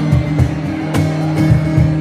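Live band music from a trio: guitar over low sustained notes, with percussion strikes keeping the beat.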